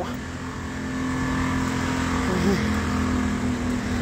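A motor vehicle's engine running close by, a steady hum that builds over the first second and holds, easing slightly near the end, as traffic passes on the street.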